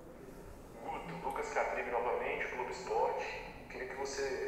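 Speech only: after a brief quiet moment, a fainter voice starts talking about a second in.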